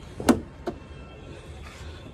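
The rear side door of a Renault Lodgy is pulled open by its handle: the latch releases with a sharp clunk, followed by a lighter click.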